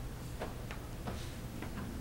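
About half a dozen light, irregular clicks over a steady low hum.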